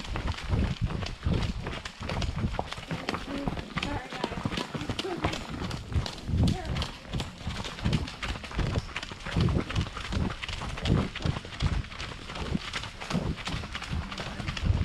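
Hoofbeats of a ridden horse on a dirt trail, a continuous run of low thuds with sharper clicks.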